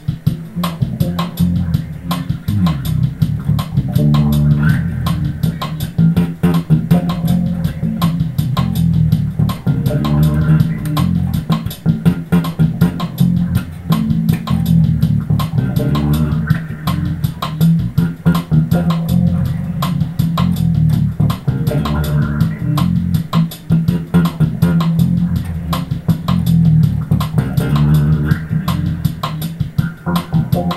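Ken Smith Burner five-string electric bass, made in Japan, playing a continuous bass line with its EQ flat and the pickup balance set in the middle. Its notes sit low and strong over a steady backing beat.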